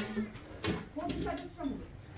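People talking in short phrases.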